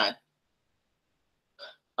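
A man's voice: the tail of a spoken word, then silence, and a little over a second and a half in, one short, quiet voiced catch in his throat before he speaks again.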